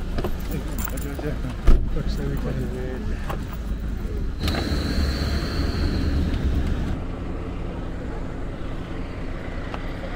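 Low, steady rumble of a tour van's engine, with one sharp loud thump just before two seconds in, amid people's voices.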